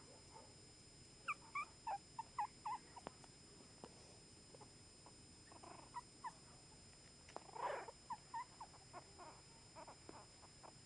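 Chihuahua puppy squeaking: a quick run of short, high squeaks, then scattered squeaks and one longer, louder cry later on.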